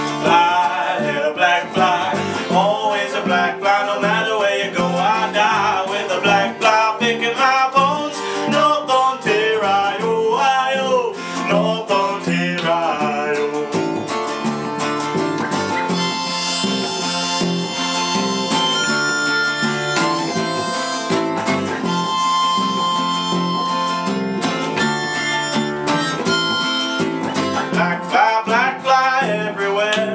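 A folk instrumental break: a harmonica plays the melody over two strummed acoustic guitars.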